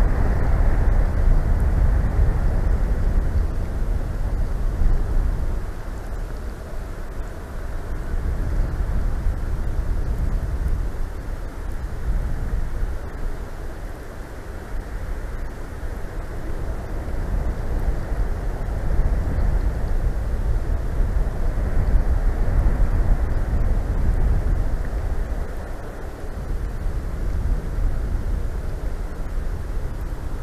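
Wind gusting during a snowstorm, rushing over the microphone with a low rumble that swells and eases every few seconds.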